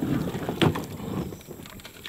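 A plastic sit-on-top fishing kayak, a Jackson Kayak Cuda 12, being tipped up onto its side in shallow river water. About a second of splashing and rubbing noise, loudest about half a second in, then dying down.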